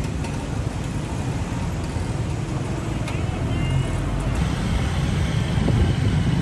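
Street traffic heard from a motorbike in congested city traffic: a steady, loud mix of engine rumble and road noise, heaviest in the low end.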